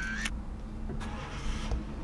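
Squeegee wiping a car windscreen, heard from inside the car: a brief squeak on the glass at the start, then a swishing scrape about a second in, over a low steady hum.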